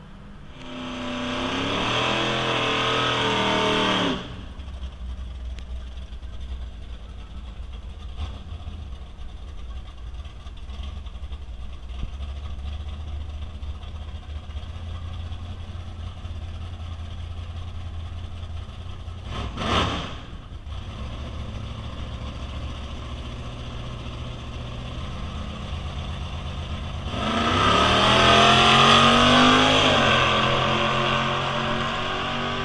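Drag race cars accelerating hard down the strip, the engine pitch climbing as each car pulls away. The first run cuts off abruptly after about four seconds. A steady low engine rumble follows, broken by a short loud burst about two-thirds of the way in, and another car launches with rising pitch near the end.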